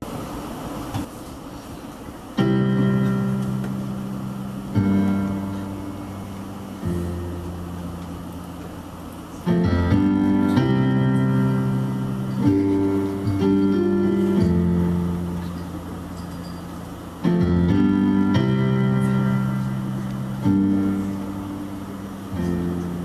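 Piano-voiced keyboard playing the slow introduction to a ballad: sustained chords, each struck and left to fade before the next, about every two to three seconds.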